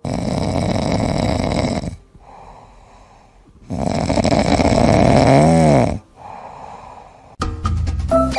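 A sleeping cat snoring: two long, loud snores about two seconds each, with a quieter breath between them.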